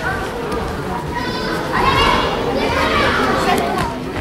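Spectators' voices in a large hall, children among them, talking and calling out at once; high-pitched shouting joins in from about a second in.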